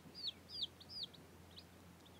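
Baby chicks peeping: a quick run of about six short, high chirps in the first second, then quieter.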